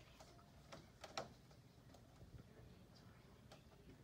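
Near silence, with a few faint ticks from a pen tracing around a stencil on paper.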